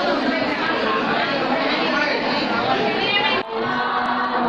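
A crowd of people talking over one another in a large hall, a continuous dense chatter. Near the end it cuts off suddenly and held singing tones begin.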